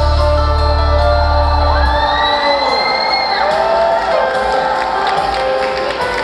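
A live pop-rock band's held closing chord over a low bass note, which cuts off about two seconds in. Then the audience cheers, with a high rising whoop.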